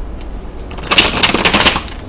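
A deck of tarot cards being shuffled by hand: a rapid run of card flicks starts about a second in and lasts about a second.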